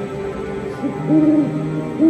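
Show soundtrack music with hooting calls. One call rises and falls in pitch about a second in, and another starts at the very end, each louder than the music under it.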